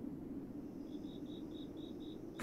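Faint cricket chirping: a run of short, high, evenly spaced chirps about four a second that starts about a second in, over a low steady hum.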